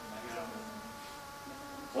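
A steady buzzing hum holding several fixed pitches at once, unchanged throughout.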